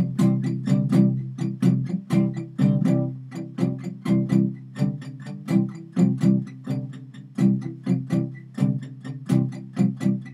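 Acoustic guitar strummed on a C chord in a steady rhythm of several strokes a second.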